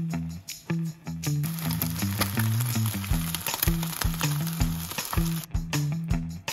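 Background music with a repeating bass line. From about a second and a half in, eggs frying in oil in a non-stick pan sizzle under the music, and the sizzle cuts off suddenly shortly before the end.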